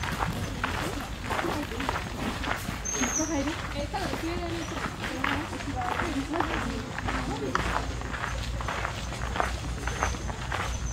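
Footsteps at an even walking pace, about two steps a second, with people's voices talking nearby through the middle of the stretch.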